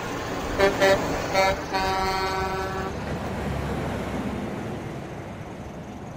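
Semi truck air horn: three short blasts, then one longer held blast of about a second. Steady highway traffic noise runs underneath and slowly fades.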